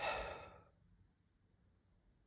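A person sighing: one breathy exhale lasting about half a second at the start, fading away, then quiet room noise.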